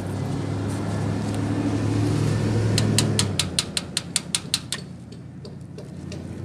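A motor vehicle's low engine rumble swells and passes, then a quick run of about ten sharp metallic knocks, about five a second, on a house's metal door.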